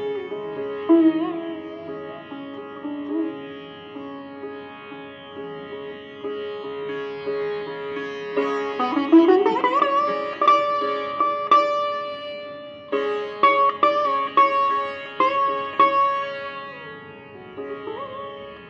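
Solo sitar playing raga Bhairavi: a slow melodic line of long, bending notes, a wide upward pitch glide about nine seconds in, then a string of sharper plucked strokes.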